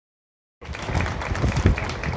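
Audience clapping with crowd noise, cutting in abruptly about half a second in.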